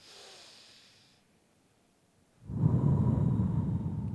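A person's breathing into a microphone during a guided deep-breathing exercise: a faint breath in for about a second, a pause, then a long, loud breath out starting about two and a half seconds in, heard as low wind noise on the microphone.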